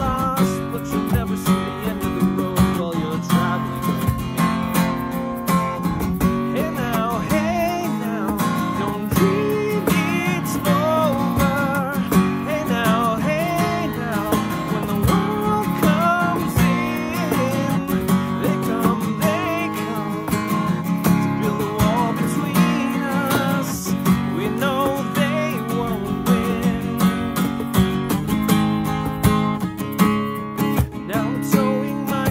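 Taylor acoustic guitar strummed steadily in chords, with a man singing the melody over it.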